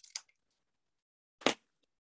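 Scissors cutting a corner off a small piece of cardstock at an angle: faint snipping at the start, then one sharp click about halfway through.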